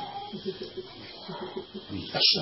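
Indistinct voices talking at a low level, no clear words.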